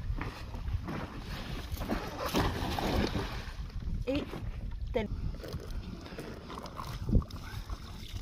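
A cast net thrown from a boat lands on the river with a hissing splash about two to three seconds in, over a low rumble of wind on the microphone. A couple of short exclamations follow, and a single knock sounds on the boat near the end.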